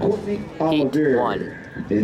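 An announcer's voice calling out the runners and their lanes for the heat, in stretches broken by short pauses.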